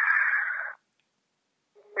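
Telephone-line audio: a man's long breathy exhale while he thinks over an answer. It cuts off under a second in, leaving about a second of dead silence, and his speech starts again near the end.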